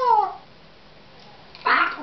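Pet parrot vocalizing twice: a pitched call falling in pitch that ends about half a second in, then a harsh, raspy call about one and a half seconds in that turns into a short pitched sound.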